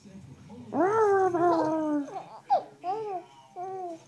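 A baby vocalizing: one long, high, falling call about a second in, then three short calls.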